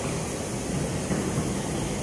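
Steady background noise: a hiss with a low rumble under it and no distinct events.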